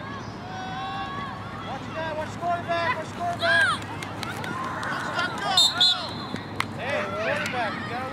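Young players and spectators shouting and calling out in overlapping voices during a flag football play, with a few sharp high-pitched yells about halfway through.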